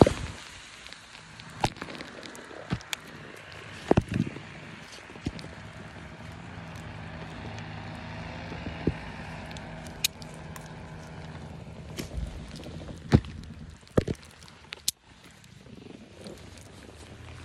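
Handling noise from paramotor harness gear held against the microphone: scattered sharp knocks and clicks, the loudest about four seconds in and near the end, over a faint steady low hum.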